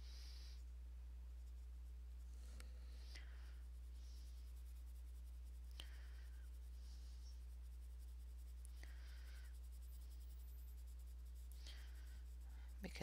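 Faint scratching of a coloured pencil on paper in short, light strokes every second or two, feathering colour out across a petal. A steady low electrical hum runs underneath.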